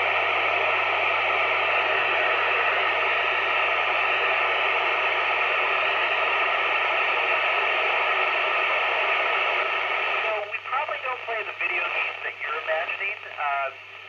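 Yupiteru multi-band scanner tuned to the ISS downlink on 145.800 MHz gives a steady rush of FM receiver hiss while no signal comes through between transmissions. About ten seconds in the noise thins and a voice comes back through it over the radio.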